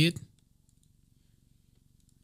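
Near silence after a brief spoken word, with a few faint clicks from a computer as the text is selected and copied.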